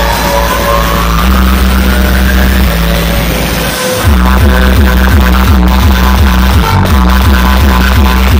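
Loud electronic dance music from a large DJ speaker stack, with heavy bass. A rising sweep builds over the first few seconds. About four seconds in, the bass drops out for a moment, then a fast pulsing bass beat kicks in.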